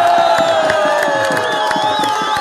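Rally crowd cheering and shouting, with one long drawn-out cry held above the noise, slowly falling in pitch.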